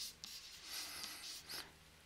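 Faint scratching of a stylus writing a short word by hand.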